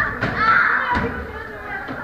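Children's voices and shouts in a busy class, with two sharp thuds of kicks landing on hand-held kick pads, about a quarter of a second and about a second in.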